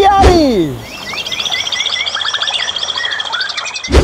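Birdsong: a fast run of quick repeated chirps with short falling whistles, after a man's drawn-out falling call in the first second. A sudden loud hit comes near the end.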